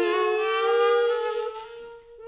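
Tenor saxophone holding one long note that slides up a little at the start, then fades away about a second and a half in.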